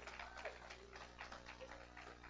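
Faint, irregular light ticks and taps over a low steady hum in a hall.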